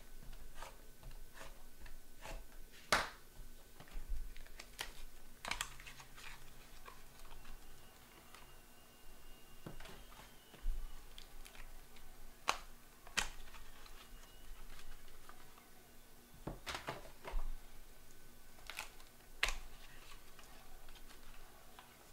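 Irregular clicks and taps from trading-card packs and cards being handled and opened by hand, with a few sharper knocks among lighter clicking.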